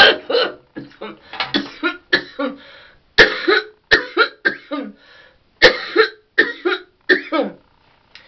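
A woman coughing over and over in short bursts after inhaling cannabis smoke from a glass water pipe, the loudest coughs about three and six seconds in.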